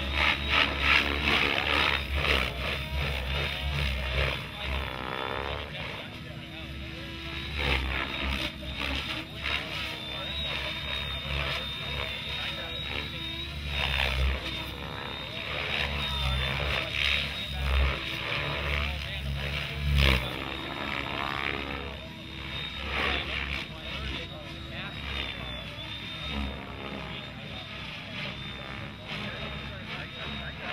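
Electric radio-controlled helicopter (Mikado Logo) flying aerobatics: rotor noise and a high motor whine that surge and ease with the manoeuvres, with voices in the background.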